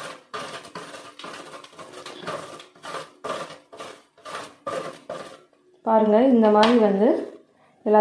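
Dark chocolate rubbed against a stainless-steel box grater, a run of short rasping strokes at about two a second that stop after about five seconds. A woman's voice follows briefly near the end.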